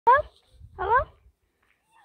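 Domestic cat meowing twice, two short calls each rising in pitch, the second a little longer, with a low rumble under the second.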